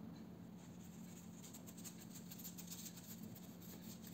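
Faint, quick scratchy strokes of a watercolour brush on paper, from about half a second in to near the end, over a low steady hum.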